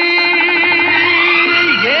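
Old Hindi film song playing: a single note held steady for about a second and a half, then a drop in pitch as the next sung line begins near the end.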